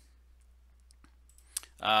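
A few faint, sharp computer-mouse clicks over quiet room tone, one of them advancing a slide; a man's voice starts near the end.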